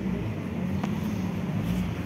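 A vehicle engine idling steadily, a low even hum, with a faint click about a second in.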